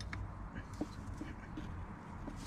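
A few faint small clicks and taps of a wrench being worked on the bleed screw of a clutch slave cylinder, over a low steady hum.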